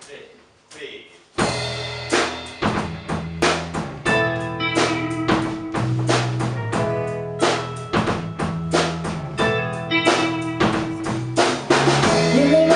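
Live band starting the song's instrumental intro about a second and a half in: drum kit keeping a steady beat under guitars and sustained low notes, after a brief low murmur.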